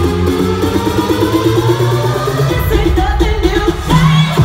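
Future house dance music played by a DJ over a club sound system: a steady bass line and short repeated synth notes, with a sung vocal over them.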